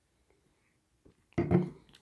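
Quiet while beer is sipped from a glass. About a second and a half in comes a short loud burst: a glass set down on a marble tabletop, with a brief hum from the drinker after swallowing.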